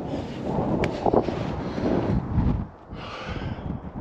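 Wind rumbling on the microphone, with barefoot footsteps in loose dune sand.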